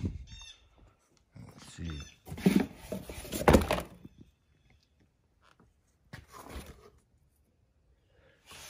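A few short bird chirps near the start. Then, about two to four seconds in, a stretch of rustling and knocks from a cardboard box of plastic-wrapped valve covers being handled, with a few softer handling sounds later.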